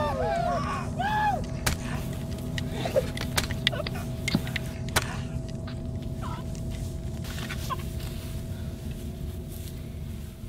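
Sound of a fight in a film: a low, steady rumbling drone with scattered sharp clacks and knocks, and a few short shouts in the first second or so.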